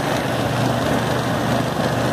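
Electric fan running steadily inside a wooden MDF box: a constant motor hum with the rush of air from the spinning blades.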